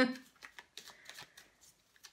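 A deck of tarot cards being shuffled overhand by hand: a quick, irregular run of soft card flicks and slaps as packets of cards are pulled through the hands. A short burst of voice sounds right at the start.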